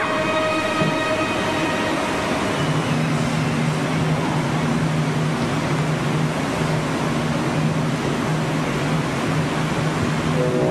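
Opera orchestra playing a loud, rushing passage with no voice; a low held note comes in about two and a half seconds in and sustains.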